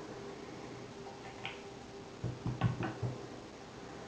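A vertical foregrip clicking and knocking against an M4 replica's Picatinny rail as it is slid into position: one light click about a second and a half in, then a short cluster of knocks over the following second.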